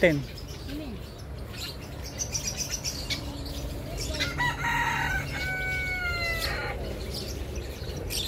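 Domestic rooster crowing once about halfway through, a cock-a-doodle-doo that ends in a long held note falling slightly in pitch.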